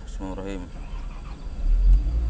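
Komatsu PC200 excavator's diesel engine starting: a low rumble swells sharply about a second and a half in, peaks near the end, and runs on steadily.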